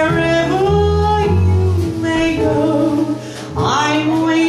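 Live small jazz band music: a slow 1940s ballad played on piano, double bass, drums and trumpet, with long held melody notes over low bass notes and a rising glide near the end.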